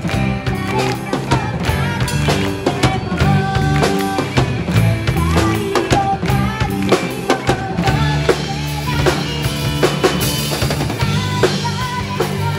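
A live rock band playing an upbeat song: drum kit driving a steady beat with kick and snare, under bass, electric guitars and keyboards, with a girl singing lead into a microphone.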